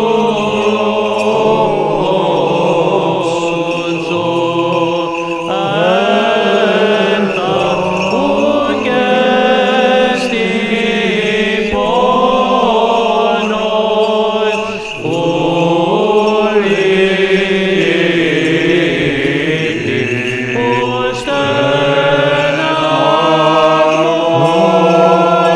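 Greek Orthodox Byzantine chant: a slow, melismatic vocal line gliding between held notes over a sustained low drone.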